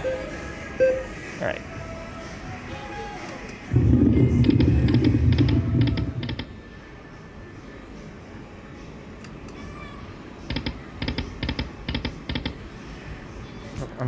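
Buffalo Stampede video slot machine's spin sounds: a loud low rumble for about two and a half seconds, then, a few seconds later, a quick run of short clicking ticks as the reels land.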